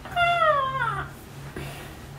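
A single high-pitched, meow-like cry lasting just under a second, held briefly and then falling in pitch.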